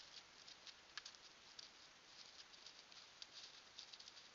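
Faint, irregular crackling and rustling of a blacktail deer's hooves stepping through dry leaf litter, over a steady hiss, with a sharper click at the very start.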